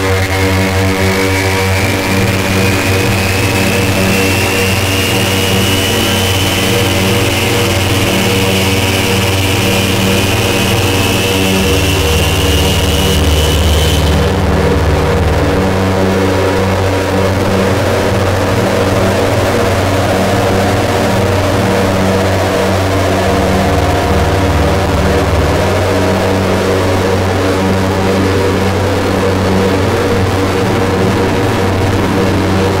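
Experimental harsh noise music: a dense, loud wall of noise over low droning tones that shift in steps. A high whine glides slowly upward and cuts off suddenly about halfway through, and a lower whine rises through the second half.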